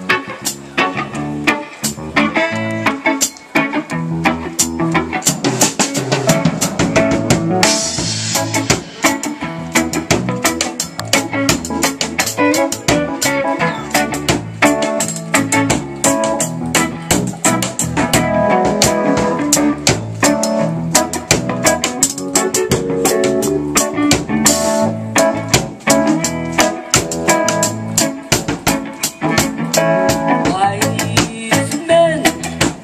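Live band playing: a drum kit keeps a busy, steady beat under electric guitar and bass guitar.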